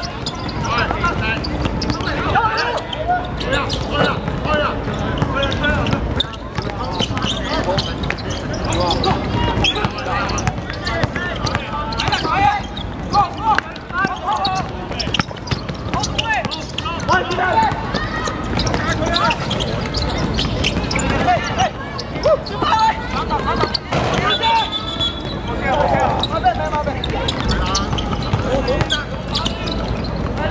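Basketball bouncing on an outdoor hard court amid live game sound, with players and onlookers calling and shouting throughout.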